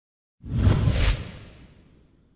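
A whoosh sound effect for a logo reveal, with a deep rumble underneath, starting about half a second in and fading out over the next second.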